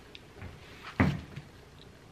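Kitchen handling sounds at an open refrigerator: a few light clicks and one solid thump about a second in, as a plastic-wrapped mixing bowl of dough is taken off a shelf.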